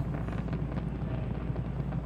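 A steady low rumble and hiss with a constant low hum underneath, even throughout, with no distinct events.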